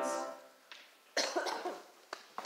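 The ensemble's final held chord dies away in the hall. About a second later come a few coughs from the performers.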